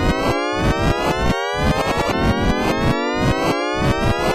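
Synthesized siren-like rising tone of many stacked pitches gliding upward together, heard as an endless rise like a Shepard tone, over a pulsing low beat that drops out briefly every second or so.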